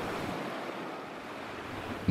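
Small sea waves breaking and washing up a sandy beach: a steady rush of surf.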